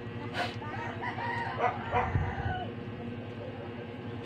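A rooster crowing in the background. The call lasts about two seconds, with a wavering pitch.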